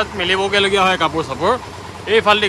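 A person's voice talking, with rising and falling intonation; speech only, no other sound standing out.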